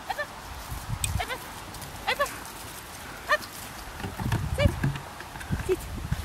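A dog giving short, high, squeaky yelps over and over, about one a second. Low thumps come in between, a few seconds in.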